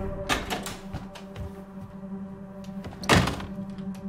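A low, steady film-score drone, with a few light knocks in the first second and one loud thud about three seconds in.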